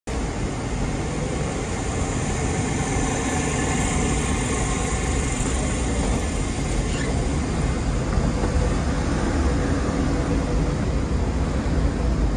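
Steady noise of a station hall with a moving escalator, its drive giving a faint, even hum under a wide, unchanging wash of sound.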